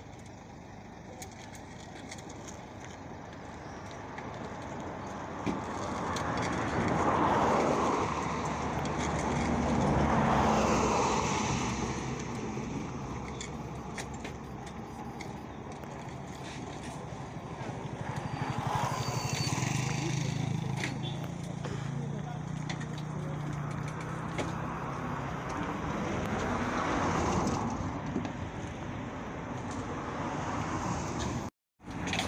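Road vehicles passing one after another, each swelling up and fading away, four times, with a low engine hum in the middle, over background voices.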